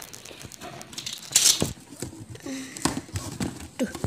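Handling sounds from a cardboard box covered in wallpaper sticker: a box cutter trimming the sticker paper at the box rim, with paper rustling and a few light knocks. A short scraping rustle about a second and a half in is the loudest sound.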